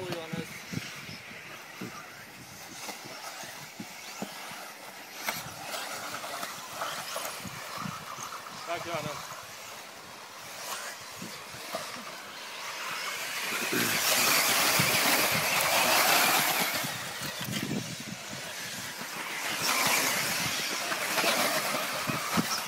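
1:10 scale 4WD electric off-road RC buggies racing on a dirt track: motor whine and tyre hiss that swells loud twice as the pack passes close, in the middle and again near the end.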